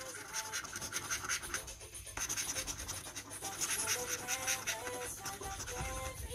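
A coin scratching the coating off a paper scratchcard in quick repeated strokes, with a short pause about two seconds in. Soft background music plays underneath.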